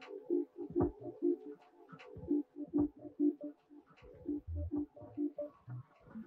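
Live experimental electronic noise music: a stuttering run of short, low, choppy tones, a few each second, broken by sharp clicks and a few deep thuds.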